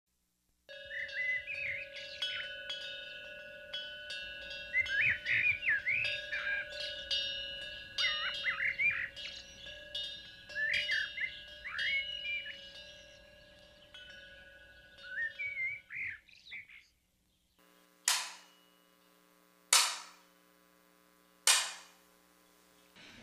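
Birds chirping and calling over a steady held musical tone, as an intro bed. After a short pause come three sharp strikes, evenly spaced about a second and a half apart, each ringing out briefly.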